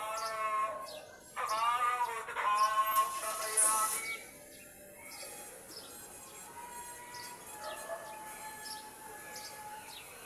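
A singing voice with wavering, sliding pitch for about the first four seconds, then fading to a quieter background with short, high bird chirps repeating through the rest.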